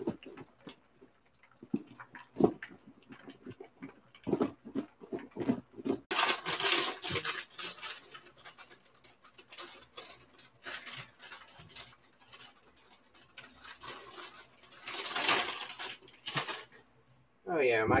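Kitchen handling sounds while breading chicken: scattered clicks and knocks from a plastic breading container and tongs, and two longer bursts of rustling, about six seconds in and again about fifteen seconds in, as a crinkly foil bag is handled.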